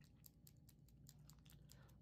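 Faint gum chewing close to the microphone: a quick run of soft, wet clicks.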